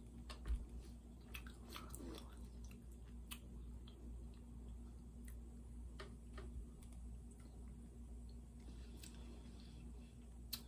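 Faint chewing of a soft peanut butter snack cake with the mouth closed, with scattered small clicks and one short thump about half a second in.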